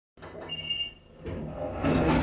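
An elevator gives a short, high beep about half a second in. From about a second and a half its doors slide open with a rumble that grows louder near the end.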